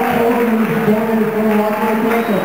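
A man's voice drawn out in long, slowly bending notes, like chanting or singing.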